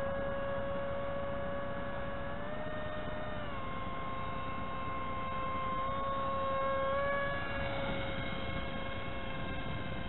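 An RC foam plane's 2205 2300Kv brushless motor spinning a 5045 two-blade prop in flight, a steady whine over rushing noise. The pitch rises briefly about two and a half seconds in and drops back a second later, then lifts slightly again around seven seconds in, as the throttle is eased up and back.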